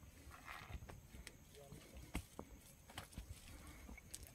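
Faint scattered light knocks and rustles from a fishing net being handled on stony ground, with a low rumble underneath.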